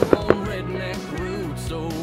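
Music soundtrack with steady instrumental tones, over which fireworks shells bang three times in quick succession right at the start.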